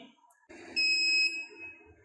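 A semi-automatic biochemistry analyzer sounds one high electronic beep, starting just under a second in and lasting about half a second before fading. It is the alert as the reading finishes and the analyzer flags that its printer is out of paper.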